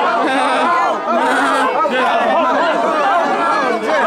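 A group of young people's voices talking and shouting over one another, excited and lively, close to the microphone.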